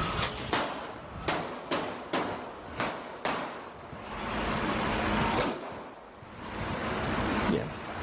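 Handgun shots, a Glock .45, recorded on a phone inside a bar: seven sharp, unevenly spaced shots in the first three and a half seconds. They are followed by a rushing noise that swells twice.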